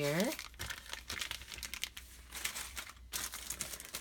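Clear plastic bag crinkling irregularly as it is handled and moved, with a short pause about three seconds in.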